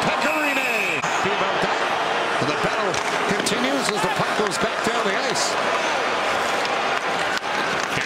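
Ice hockey arena crowd noise, with voices in the stands rising and falling, and scattered sharp clacks of sticks and puck on the ice.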